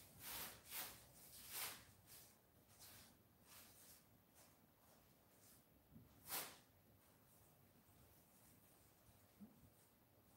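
Near silence with faint soft swishes of an ink brush dabbing on mulberry paper: several quick strokes in the first two seconds, fading out, then one louder stroke a little past the middle.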